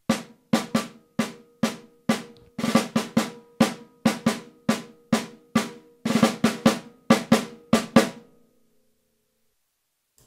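Solo snare drum played in a rhythmic passage in 4/4, about four bars long: sharp single strokes with a few quick flurries of grace notes, the drum ringing out after the last hit a little past eight seconds in.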